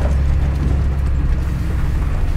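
Tractor engine running steadily, heard from inside the cab as a low, even hum.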